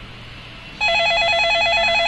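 Electronic telephone ring: a loud, rapid warbling trill that starts about a second in, signalling an incoming call.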